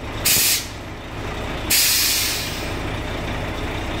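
Compressed air hissing from the truck's air-suspension valves in two bursts, a short one near the start and a longer one about two seconds in that fades away, as the ride height is adjusted. A steady low engine rumble runs underneath.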